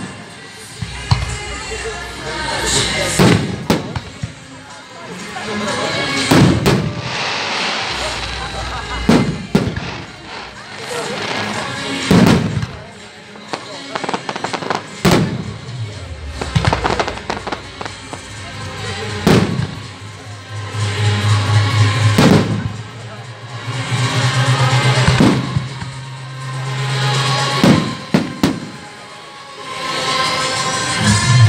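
Aerial firework shells bursting in a display: a dozen or so sharp bangs, roughly two to three seconds apart.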